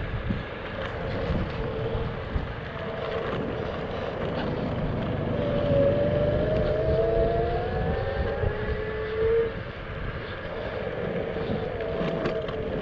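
Electric scooter hub motors whining while riding, the whine growing stronger about halfway through and rising in pitch as the scooter speeds up, then dropping away near the end, over a steady rumble of wind on the microphone.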